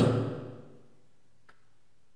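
A man's voice trails off at the end of a word, then near silence with one faint click about one and a half seconds in.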